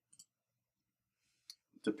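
A few faint computer mouse clicks: a quick pair at the start, then two more single clicks about a second and a half in.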